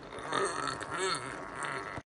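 Quiet, indistinct human voice sounds, well below the level of the surrounding talk.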